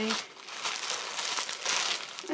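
Plastic mailing bag crinkling and rustling as it is handled and pulled open, in a run of many small crackles.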